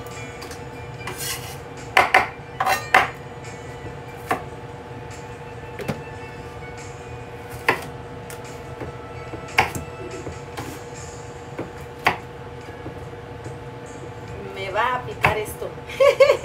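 Kitchen knife chopping a jalapeño on a cutting board: irregular sharp knocks of the blade on the board, a quick run of four strikes about two to three seconds in, then single cuts every couple of seconds.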